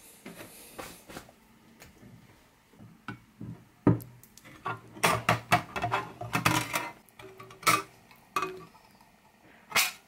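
Hand tin snips cutting thin sheet metal from an old microwave's casing: a run of sharp, irregular metallic snips, coming thickest from about four seconds in, with lighter clicks of the sheet being handled before that.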